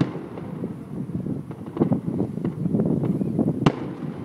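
Aerial firework shells bursting in a rapid, uneven series of booms and crackles, the loudest a single sharp bang near the end.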